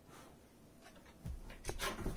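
Cloth rustling and rubbing as sweatpants fabric is handled and shifted, with a few soft bumps and a louder rustle near the end.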